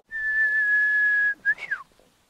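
A high, clear whistled note held steady for just over a second, then a short blip and a quick falling whistle near the end.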